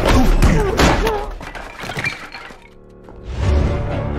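Trailer music under sharp impacts and shattering glass in the first second or so. The sound then falls away to a short lull, and a deep low boom hits about three and a half seconds in.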